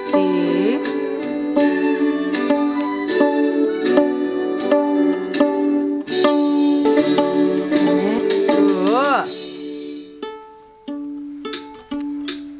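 Violin strings plucked pizzicato in a steady rhythm, with backing music playing along; a few sliding swoops in pitch come about eight to nine seconds in, and the music thins out near the end.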